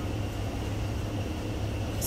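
Steady low background hum with a faint even hiss: the room tone of the shop, with no distinct event.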